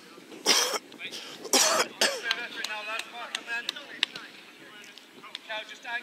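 Two loud coughs close to the microphone, followed by players calling out across the pitch and a single sharp knock about four seconds in.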